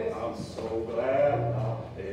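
A man's preaching voice in a drawn-out, sing-song chant, its pitch gliding up and down through long held phrases. This is the intoned preaching style of old-line Primitive Baptist elders.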